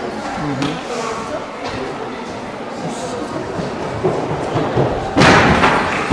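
Background chatter of voices echoing in a large sports hall, with one loud thud about five seconds in.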